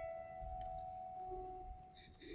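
Grand piano played solo and softly: a held note rings on and slowly fades, with a quiet lower note sounding briefly past the middle.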